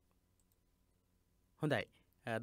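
A few faint computer mouse clicks over quiet room tone, then a short spoken word near the end.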